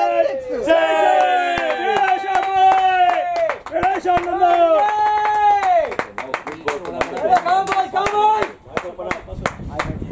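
Men's voices shouting in long, drawn-out calls from the field, then scattered hand clapping from about six seconds in.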